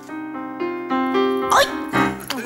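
Upright piano played live, a short phrase of single notes changing every quarter second or so.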